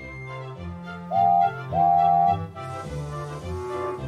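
Background music, over which a steam locomotive's whistle gives two toots at the same pitch about a second in, the second longer than the first. A hiss of steam follows near the end.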